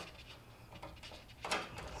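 Quiet pause with a low steady hum and a few faint small clicks, then a short hiss about one and a half seconds in.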